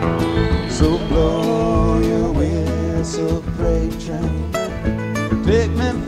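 Live acoustic country band playing an instrumental break: picked acoustic guitar lead with bent notes over strummed acoustic guitar and bass.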